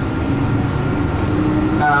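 Tour bus running along a road, a steady engine and road-noise rumble heard from inside the passenger cabin.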